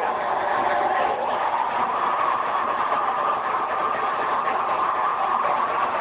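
A live melodic death metal band playing at full volume with the crowd, picked up by an overloaded recording as one steady, distorted wash of sound, muffled and without treble.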